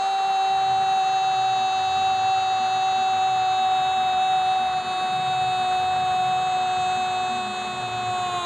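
A football commentator's goal cry, one long drawn-out 'gol' held on a single high note and sagging slightly in pitch.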